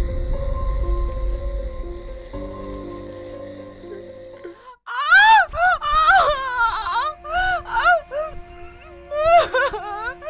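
Dramatic film score with a low rumble, fading over the first half. About five seconds in, a woman in labour starts crying out in pain: a string of loud wailing cries that rise and fall in pitch, over a held music drone.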